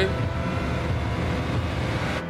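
A vehicle engine rumbling steadily under a few faint held tones, played back from a film soundtrack.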